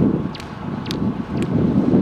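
A long pole beating ice off an overhead power line, sharp knocks about twice a second, over a heavy rumble of wind on the microphone.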